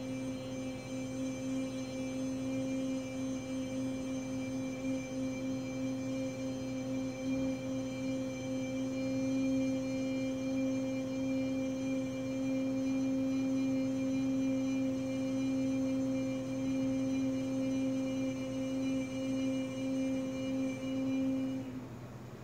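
A woman's voice toning for sound healing: one long note held at a steady pitch, stopping just before the end. A steady low hum lies beneath it.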